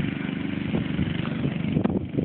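Lawn mower engine running at a steady speed, with a few light knocks over it.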